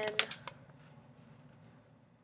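A folded paper leaflet being handled and turned over: one sharp click just after the start, then faint light rustles and ticks.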